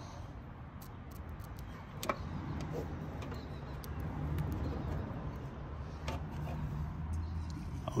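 Electric fuel pump running with a low, steady buzz to prime the fuel system. It comes in after a sharp click about two seconds in, and a few more clicks sound over it.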